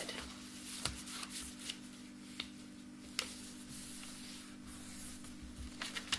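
A sheet of paper being folded and creased by hand: soft rustling, with a few sharp ticks as the fold is pressed flat.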